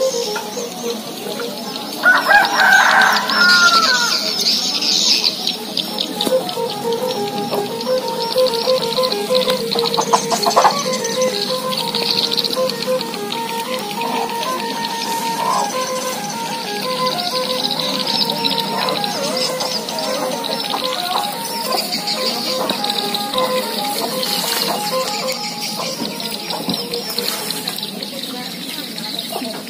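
A rooster crows once about two seconds in, the loudest sound here, with small birds chirping and a steady wavering hum running throughout.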